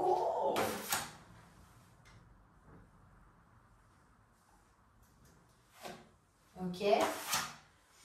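A woman's voice exclaiming at the start, with a brief sharp sound about a second in. Then there is only quiet room sound, until a short spoken "ok" near the end.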